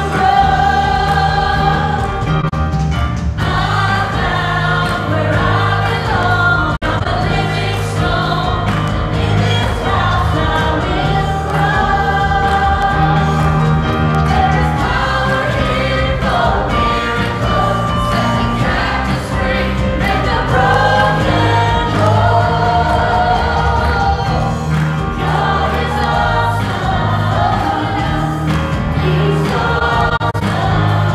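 A worship team of several women's voices and a man's voice singing a gospel praise song together through microphones, backed by guitar, piano and drums.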